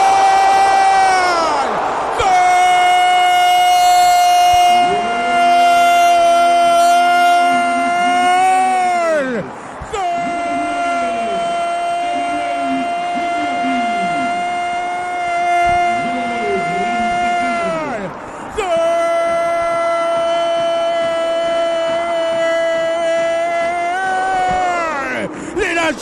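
Radio football commentator's goal cry for a converted penalty: one long shouted "gol" held at a high pitch in three breaths of about eight seconds each. Each breath slides down in pitch as it runs out, with a short break before the next. Other voices shout beneath it in the middle stretch.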